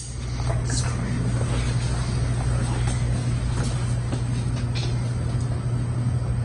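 Steady low hum of room noise with a faint hiss and a few light clicks.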